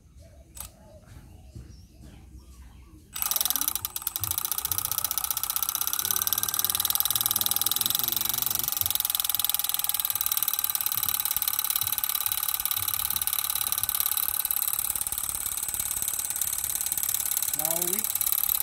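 The motor and drivetrain of a radio-controlled model walking tractor start suddenly about three seconds in and run steadily, a loud mechanical whir with fast ticking and a faint whine. They are driving a belt-driven miniature long-tail water pump that is pumping water.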